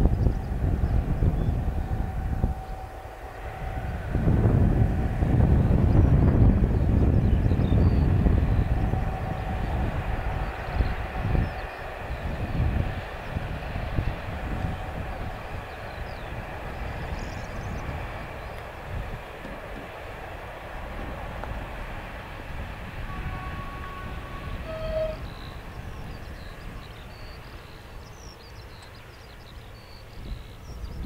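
Freight train running past on the track, its wagons rumbling, loudest a few seconds in and then fading slowly as it draws away. Gusts of wind buffet the microphone throughout.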